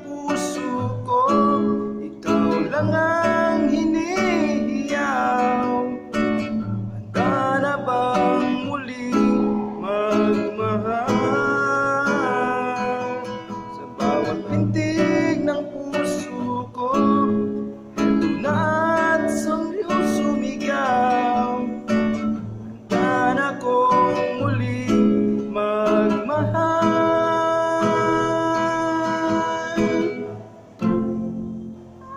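Classical acoustic guitar strummed in a steady down-up pattern through a Bm, C#m, D, E, F chord progression, with a voice singing the melody over it in long held notes with vibrato.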